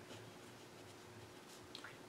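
Faint scratching of a pen writing a word on paper, over near-silent room tone.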